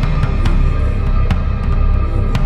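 Instrumental passage of a band: heavy bass and drums with sharp drum or cymbal strikes a few times a second over a dense, dark low end, and no voice.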